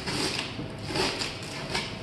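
Duct tape being peeled off a truck door and the plastic masking sheet crinkling as it is pulled away, in several short noisy bursts.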